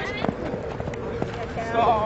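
Shouted calls from players and sideline teammates during the game: one shout right at the start and more voices near the end, with a few short knocks and a faint steady hum underneath.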